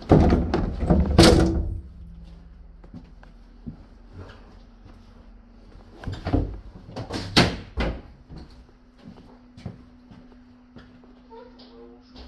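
A train carriage's exterior door being pulled shut and latched by its handle, with a loud metallic clatter and rattle lasting about two seconds. About six seconds in come a few sharp bangs of another carriage door closing.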